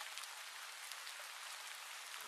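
Faint steady hiss with scattered tiny crackles.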